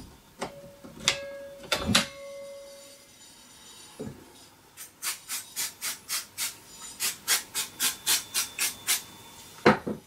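Metal brake parts clinking and ringing briefly in the first two seconds. From about five seconds in, an aerosol can of brake cleaner sprayed onto the drum brake shoes in short hissing bursts, about four a second. A loud knock near the end as the can is set down on the bench.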